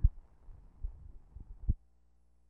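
Low thumps on an old 16mm newsfilm soundtrack as the interview's sound runs out at a splice. A sharp thump at the start, a few softer ones, and another strong one near the end, after which only a faint steady hum remains.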